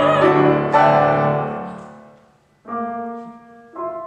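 Grand piano accompaniment to an art song. A sung soprano note ends at the start, a loud piano chord just under a second in rings and dies away to a brief hush, then two quieter piano chords follow about a second apart.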